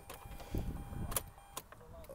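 A few faint clicks, the sharpest about a second in, over low rustling, from the ignition key being handled in a Mazda RX-8's cabin with the engine off.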